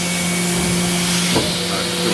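Mazak HCN-4000II horizontal machining center running: a steady hiss with a steady low hum underneath.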